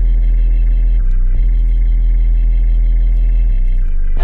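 Loud, sustained organ-like music: held chords over a deep bass drone, the chord shifting about a second in and again near the end.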